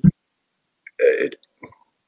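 Speech fragments over a video call: the clipped end of a low "mm-hmm", a pause of dead silence, then a single short word about a second in.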